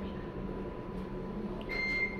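A steady low hum, then near the end one short, high-pitched electronic beep held on a single steady note.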